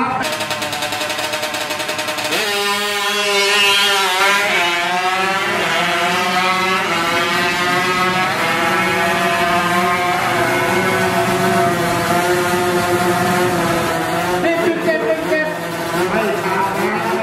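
Tuned Honda Wave drag bike's single-cylinder four-stroke engine launching hard about two and a half seconds in. It climbs in pitch and drops back at each gear change for the first couple of seconds, then holds a high, fairly steady note at full throttle down the strip, easing off near the end.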